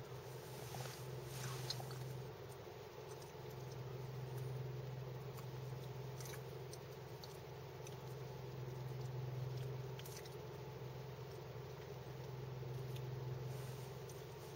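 Car engine idling, a low steady hum heard from inside the cabin, with a few faint clicks.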